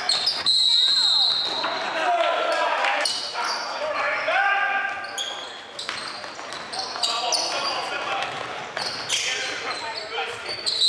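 Basketball game on a hardwood gym floor: sneakers squeaking in short, high squeals, the ball bouncing, and voices calling out, all echoing in the hall.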